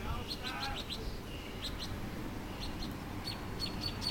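Birds chirping: a scattered series of short, high chirps.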